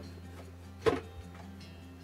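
A single sharp metallic clink about a second in: a hand tool knocking against the gear-shaft cover of a Craftsman snowblower as the cover is worked loose.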